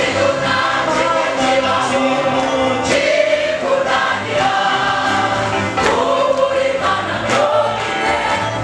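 A women's gospel choir singing together over a steady beat.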